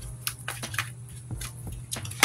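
Tarot cards being shuffled and handled: irregular light clicks and flicks, several a second, over a steady low hum.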